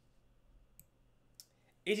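Near quiet with two faint, sharp clicks, about a second in and again half a second later, then a man starts speaking just before the end.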